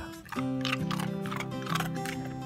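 Background music with held notes, over which a golden retriever crunches ice about three times.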